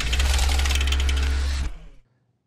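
Logo transition sound effect: a dense, rapid clicking mechanical whir over a deep rumble, fading out about a second and a half in.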